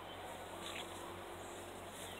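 Bees humming faintly among flowering coffee trees: a low, steady hum over quiet outdoor background.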